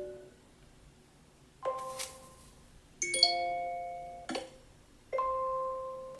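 iPhone text tones from iOS 17's new tone list previewing through the phone's speaker: three short chime-like alerts, each a few ringing notes that fade out. They start about one and a half, three and five seconds in.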